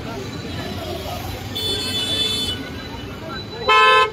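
Car horns honking twice: a steady toot about a second and a half in lasting about a second, then a louder short blast near the end. Voices and street noise murmur underneath.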